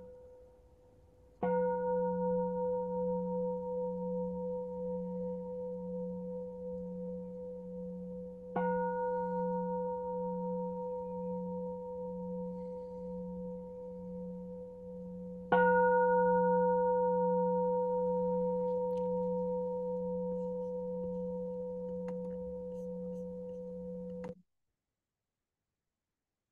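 Singing bowl struck three times, about seven seconds apart, each stroke ringing on with a low pulsing hum and higher overtones as it slowly fades; the third stroke is the loudest, and the ringing cuts off suddenly near the end. The strokes mark the close of the silent meditation period.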